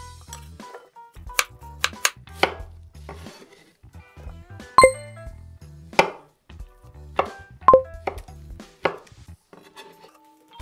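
Chef's knife chopping pear and kiwi on a wooden cutting board: irregular sharp knocks, about eight in all, two of them with a short ringing clink. Background music runs underneath.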